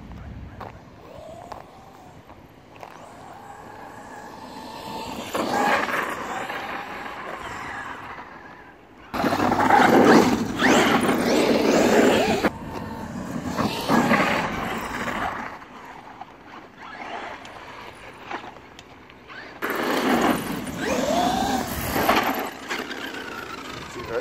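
Traxxas X-Maxx RC monster truck's brushless electric motor whining up and down in bursts of throttle, with loud rushes of tyre and drivetrain noise as it tears across grass and tarmac on Pro-Line tyres. The loudest runs come about ten seconds in and again near the end, when the tyres are chewing up the grass.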